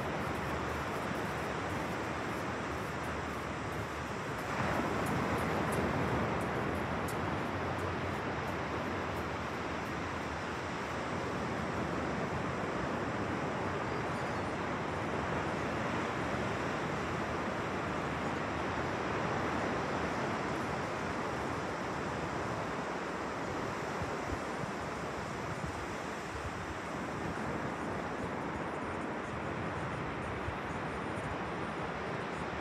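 Ocean surf washing onto a beach as a steady rush, swelling louder about four seconds in.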